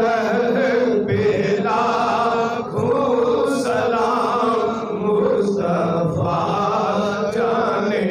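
A man's voice chanting an Urdu devotional salam in a held, melodic recitation into a microphone, sustained with no pauses.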